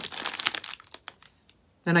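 Thin clear plastic packaging bags crinkling as they are handled, a dense crackle for about the first second that then stops.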